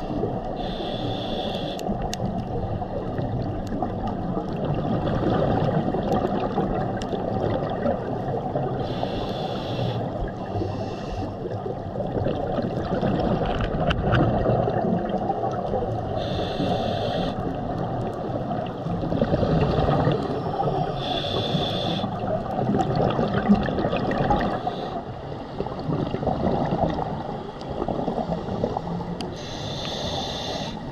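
Scuba diver breathing through a regulator underwater: a steady muffled gurgle of water and exhaled bubbles, with a brief high hiss every several seconds as air is drawn in.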